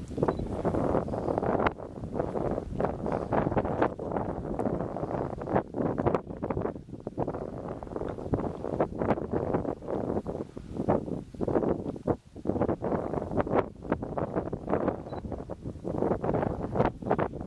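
Wind buffeting the microphone: an uneven rushing rumble that swells and drops every second or so, with short crackling spikes.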